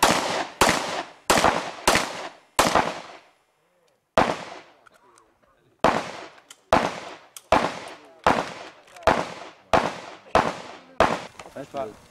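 HK P2000 pistol fired in a fast string of about fourteen shots, roughly one every half second to second, each report trailing off in a short echo. There is a pause of about a second and a half after the fifth shot before firing resumes.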